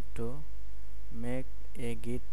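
Steady low electrical mains hum on the recording, the loudest sound throughout, with three short murmured vocal sounds from the narrator.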